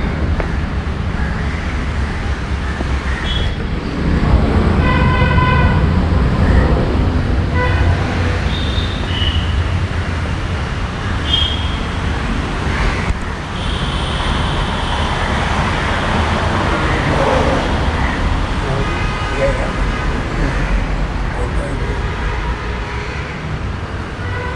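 Busy street traffic with a steady low rumble, and car horns tooting several times at irregular intervals.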